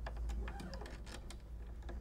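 Quiet, irregular clicking and ticking as an old steel guitar string is slackened and unwound from its tuning post.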